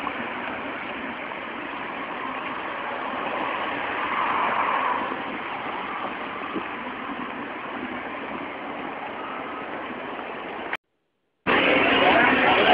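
Steady outdoor road-traffic noise, swelling briefly about four seconds in, then cutting off suddenly near the end.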